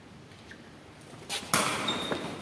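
Quiet hall room tone, then about one and a half seconds in a sudden sharp hit of a sepak takraw ball being kicked, followed by a hissing echo in the sports hall.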